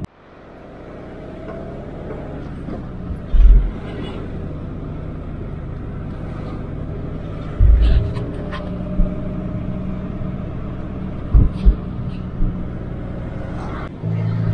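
Car engine and road noise heard from inside a moving taxi's cabin: a steady hum that swells up over the first second, broken by a few dull low thumps, the loudest about three and a half seconds in and near eight seconds.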